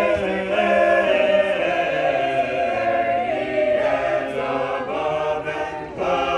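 A choir singing a shape-note hymn tune unaccompanied, several voice parts together in full chords that move to a new chord about every second.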